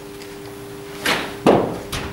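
Cricket ball bouncing on the artificial-turf pitch of an indoor net, then a sharp crack as the bat strikes it about half a second later, and a lighter click just after.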